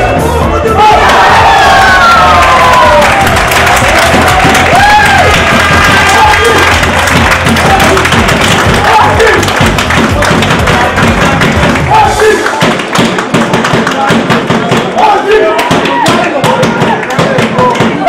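Background music mixed with spectators and players cheering and shouting as a goal is scored, the shouts loudest in the first few seconds.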